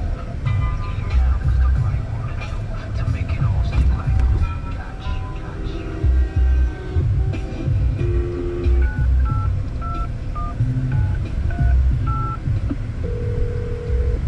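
Radio broadcast playing in a car: a music bed with a strong, regular bass beat, then a run of short touch-tone phone dialing beeps from about nine seconds in, and a steady phone ringing tone starting near the end, the lead-in to an on-air phone call.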